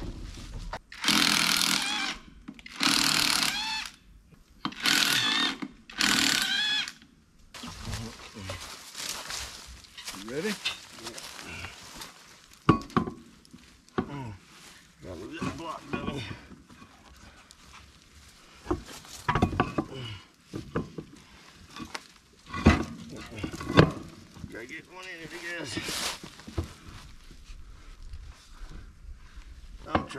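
Four loud hissing bursts of about a second each near the start, then scattered sharp clicks and knocks of hand work at an old boat trailer's steel wheel hub and lug nuts.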